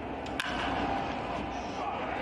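A single sharp crack of a baseball bat hitting a pitched ball, about half a second in, for a hard-hit ground ball, over a steady background haze of ballpark broadcast ambience.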